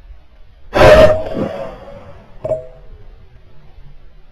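A single rifle shot fired at an animal in the crosshair, very loud and sharp with a short ringing tail. A second, much quieter sharp report follows about a second and a half later.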